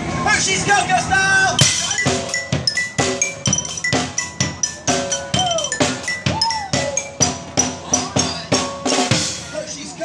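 Street drummer beating a steady, quick rhythm with drumsticks on plastic barrel-and-bucket drums, sharp strikes about four a second, with voices calling out over the beat.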